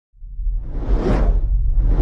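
Cinematic whoosh sound effect over a deep low rumble, swelling from silence to a peak about a second in, with a second whoosh building near the end: the sound design of an animated logo intro.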